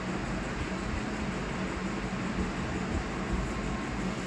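Steady, even hiss and hum of room background noise with no distinct events.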